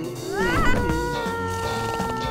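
Soft cartoon background music with sustained held notes. About half a second in, a cartoon character's short, rising, whiny squeal cuts across it.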